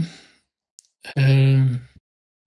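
A man's drawn-out breathy voiced sigh, held at one steady pitch for just under a second, starting about a second in after a faint click.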